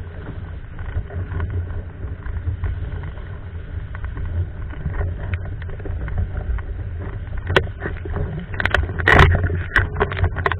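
Hypersonic windsurf board sailing fast over lake chop: a steady low rush of wind and water. From about seven and a half seconds in come sharp slaps and spray hits, loudest around nine seconds.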